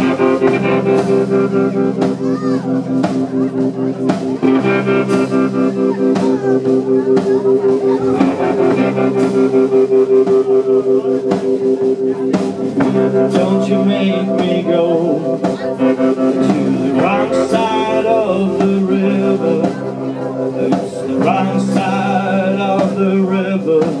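Live garage rock band playing a song's opening instrumental section: electric guitars and bass over a steady drum beat, with the lead vocal coming in right at the end.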